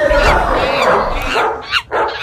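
Dog-like whining and yelping: a long wavering whine, then two short yelps falling in pitch near the end.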